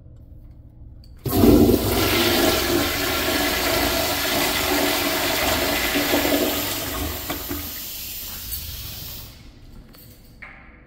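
Vintage Crane toilet with a chrome flushometer valve flushing. The rush of water starts suddenly and loud about a second in, holds steady for about five seconds, then eases off and stops near the end.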